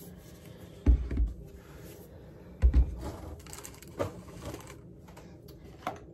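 Two dull thumps about two seconds apart, then a couple of lighter knocks: plastic shampoo and conditioner bottles being set down and handled on a countertop.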